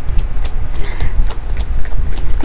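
A deck of tarot-sized oracle cards being shuffled by hand to draw clarifier cards: a quick, irregular run of card clicks and slaps over a steady low rumble.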